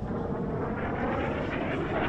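Military jet aircraft flying over the city, a noisy roar that grows slowly louder.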